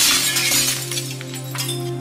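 Glass shattering: the bright crash dies away with a few separate clinks of falling pieces, over steady low background music.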